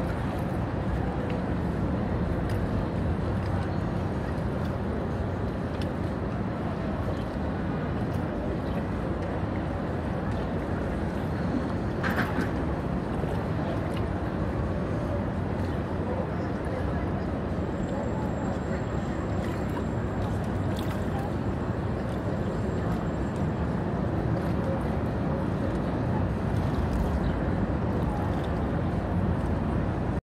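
Steady low rushing of wind on the microphone and water moving around a kayak's hull on a choppy river, with a single knock about twelve seconds in.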